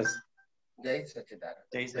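A man speaking Gujarati over a Zoom call, broken by a gap of dead silence lasting about half a second, a quarter second in.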